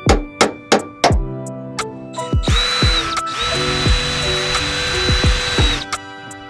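Power drill running at the tailgate hinge pivot in two bursts, a short one then a steady run of about two seconds with a constant high whine. A background music track with a steady drum beat plays throughout.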